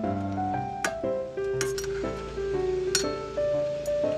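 Metal spatula clinking against a stainless steel frying pan about four times, two of them in quick succession near the middle, as a fish is turned over in simmering sauce. Background music with held notes plays throughout.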